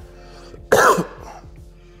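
A man's single short cough about three quarters of a second in, over quiet steady background music.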